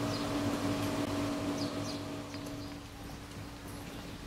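A steady mechanical hum, like a fan or air-conditioning unit, that fades out about three quarters of the way in, with a few short, high, falling chirps over it.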